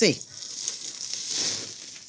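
A thick T-bone steak sizzling on a hot gas grill, a steady soft hiss of fat and juices cooking on the grate.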